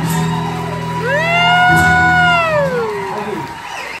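Acoustic guitars ringing on a sustained chord that stops a little under two seconds in, overlapped by one long, high whoop from a voice that rises, holds and falls away, with loudness dropping near the end.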